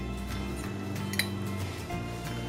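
Background music with a single clink of a metal fork against a ceramic plate a little after a second in.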